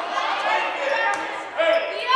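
A basketball bouncing on a hardwood gym floor, with the echo of a large gymnasium and distant players' voices.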